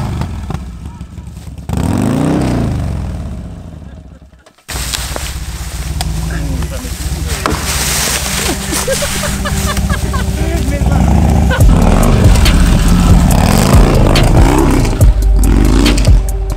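Harley-Davidson V-twin motorcycle revving as its rear wheel spins in mud and leaves; the engine note rises and falls, then fades out about four seconds in. After a sudden cut come voices over an engine, with music and a heavy low beat building from about twelve seconds in.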